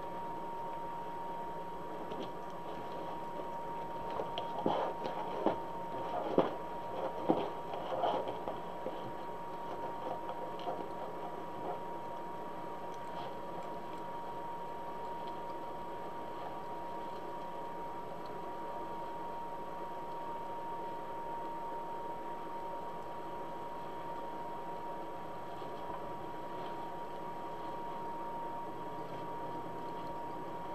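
Plastic deco mesh rustling and crinkling as it is handled and pushed into a wreath, in a run of sharp crackles from about four to twelve seconds in. Under it run a steady hiss and a constant faint high hum.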